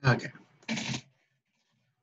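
A man's voice says "OK", and about two-thirds of a second later comes a single short noise lasting about a third of a second.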